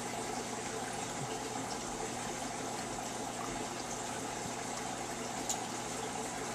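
Turtle tank filter running: a steady hiss of circulating water with a faint low hum under it.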